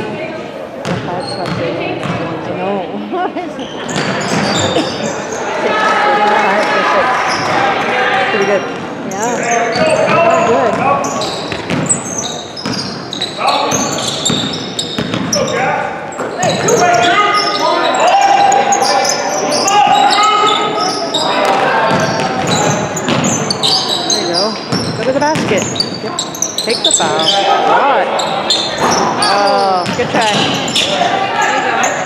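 Basketball game sounds in a large, echoing gym: a basketball bouncing on the hardwood floor, sneakers squeaking, and spectators and players talking and calling out.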